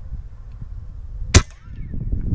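A single shot from a .25-calibre Umarex Gauntlet PCP air rifle: one sharp crack about one and a half seconds in, over a low wind rumble on the microphone.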